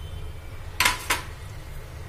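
Two sharp kitchen knocks about a third of a second apart, about a second in. A hard container or utensil is being set down or knocked against a hard surface. A steady low hum runs underneath.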